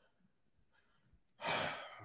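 A man's audible breath into a close microphone, about one and a half seconds in, after a silent pause; short and fading.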